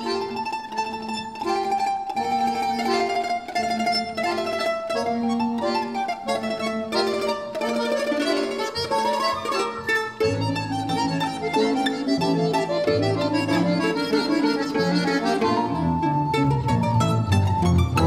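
Domra playing a fast solo melody of short, quickly plucked notes over a folk-instrument orchestra accompaniment. About ten seconds in, a deeper bass line joins and the accompaniment grows fuller.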